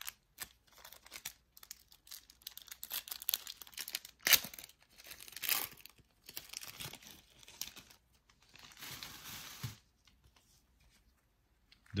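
Plastic-foil trading-card pack wrapper crinkling and being torn open, with scattered crackles, a sharp loud crackle about four seconds in and a longer tearing sound about nine seconds in.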